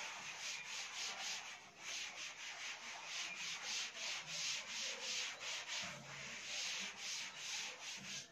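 Cloth duster wiping a chalkboard, rubbing in quick back-and-forth strokes, several a second.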